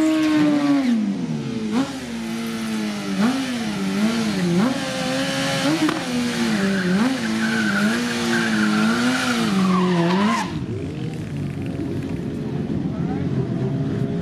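Sport motorcycle engine held at high revs at the drag strip start line, the revs rising and dipping repeatedly as the throttle is worked, with a hiss like tyre squeal over it. About ten seconds in the revs drop abruptly to a lower, rougher running sound.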